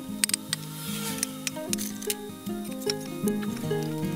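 Background music with a steady run of held notes, over sharp taps of a small hammer driving shiitake spawn plugs into holes drilled in logs, several quick taps at the start and a few more scattered later.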